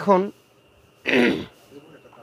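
A man says a short word, then clears his throat once about a second in.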